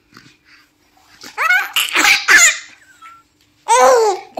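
Infant laughing and babbling in a few short, high-pitched bursts from about a second in, with a louder voice starting just before the end.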